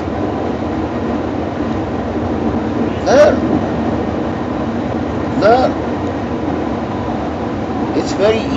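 Steady rumble and hiss of a moving passenger vehicle's cabin, with two short vocal sounds from a man about three and five and a half seconds in.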